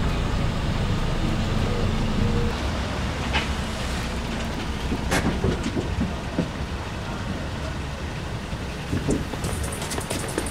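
Steady low rumble of outdoor street noise, with a few faint clicks.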